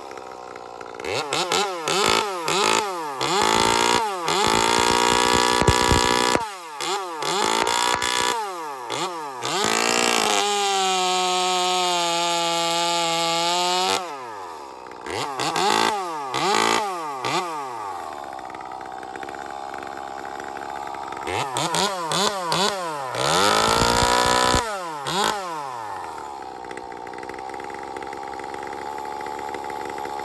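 Ported Echo 2511T two-stroke top-handle chainsaw with a 1/4-pitch chain being revved off the wood in quick throttle blips, held near full revs for a couple of seconds, then dropping back to idle between bursts, as part of breaking it in.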